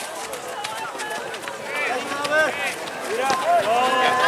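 Voices shouting and calling out across an outdoor soccer field during play, in short bursts that come mainly in the second half, with scattered sharp knocks between them.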